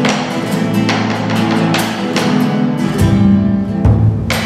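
Nylon-string classical guitar strummed in a steady folk rhythm. A bombo legüero beaten with sticks comes in with deep beats about three seconds in.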